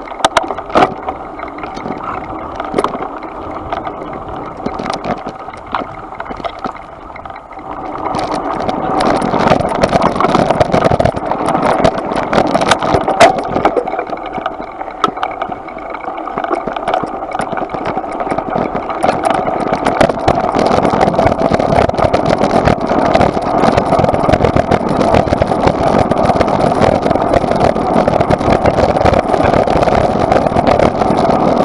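Mountain bike ridden over a dirt trail and then a gravel track, heard close up: steady tyre noise with rattles and knocks from the bike, louder from about eight seconds in.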